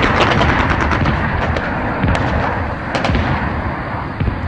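Gunfire in a staged battle scene: a quick run of shots at the start, then scattered single shots over a continuous noisy din that slowly fades.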